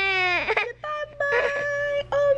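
A tired baby boy fussing and crying at naptime: two drawn-out high-pitched wails, the first falling away about half a second in, the second starting about a second in and held steady.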